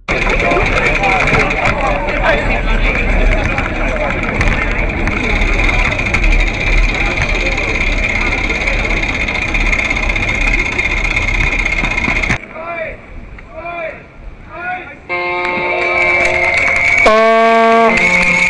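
Crowd of runners and spectators chattering, with a steady high tone running over the chatter for about twelve seconds. The sound then drops away, and near the end a plastic vuvuzela horn starts blowing a loud, steady, buzzing low note.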